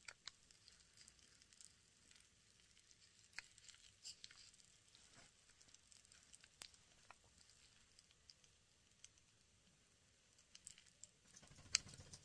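Near silence broken by faint, scattered tiny crackles and clicks at irregular times: popping candy crackling in a closed mouth.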